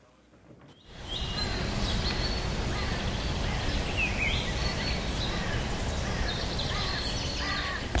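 Birds chirping over a steady outdoor hiss, starting suddenly about a second in.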